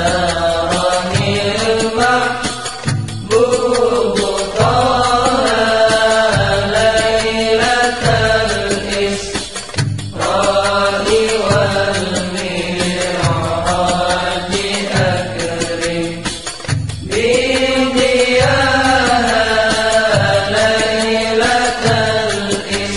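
Sholawat, an Arabic-language Islamic devotional song, sung with instrumental backing, the voices rising and falling in long melodic phrases.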